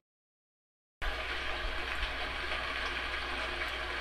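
Dead silence for about the first second, then a steady hiss of background noise with a low hum, with no speech.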